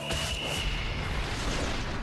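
A rumbling whoosh with a steady high tone over its first part, swelling and then fading out near the end, typical of a TV show's transition sound effect.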